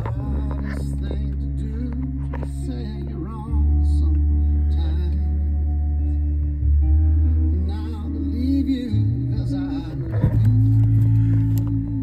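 A slow song with a singer over long, held bass notes, playing on the car's CD player; the bass gets louder about three and a half seconds in.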